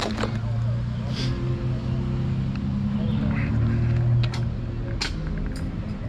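A steady low engine hum, like a vehicle idling nearby, that eases off about five seconds in, with a few light clicks and rustles from equipment being handled in a bag.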